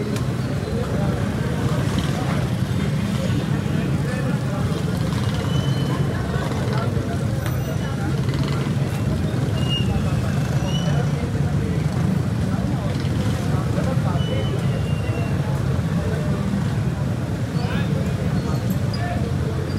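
Steady low rumble of street traffic with indistinct voices in the background.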